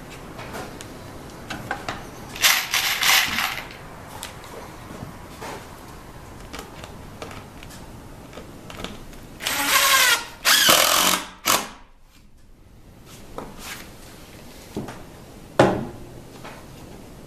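Cordless DeWalt impact driver driving screws into the plywood sled, in two bursts: a short one about two and a half seconds in and a longer one near ten seconds with a brief break. There are light clicks between the bursts and a sharp knock near the end.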